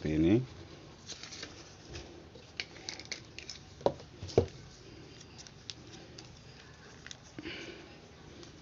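Light plastic clicks and rustles from a small plastic spray bottle being taken apart by hand, its pump sprayer pulled off; two sharp clacks about four seconds in stand out.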